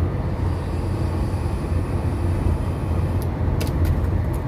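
Steady low road rumble inside a moving car's cabin. Over it, a faint high hiss while an e-cigarette is drawn on, and a few short clicks near the end.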